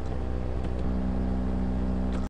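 A steady low hum, joined a little under a second in by a second, higher steady tone.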